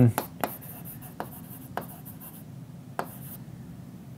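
Handwriting: faint scratching pen strokes with several short taps scattered through.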